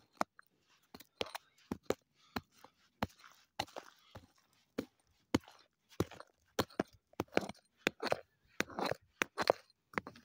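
Rock pick striking and prying at a packed dirt-and-rock wall to dig out an agate vein: a string of short, sharp strikes at uneven spacing, coming faster in the second half.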